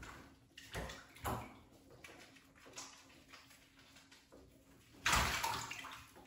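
Hand splashing and scooping shallow bathwater in a bathtub while washing a beagle puppy's back feet: a few short splashes, the loudest about five seconds in.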